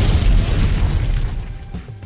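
Explosion sound effect: a loud, deep boom whose rumbling tail fades away over about two seconds, over background music.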